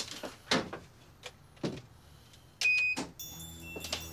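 A hotel room door opening into a dark room, with a few knocks and clicks. A short, high electronic beep comes about two and a half seconds in, then soft music begins near the end.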